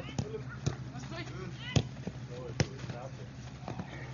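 A football being kicked back and forth in a passing drill: about four sharp kicks, the loudest a little under two seconds in, with players' calls in between.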